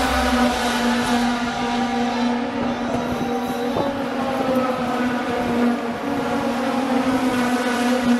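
Pro Mazda open-wheel race cars' Mazda rotary engines running on the track, a single steady high engine note that holds its pitch with only a slight dip about three-quarters of the way through.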